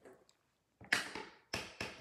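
Two sharp plastic taps, about a second in and again half a second later, as a clear acrylic stamp block is tapped onto a StazOn ink pad to ink it.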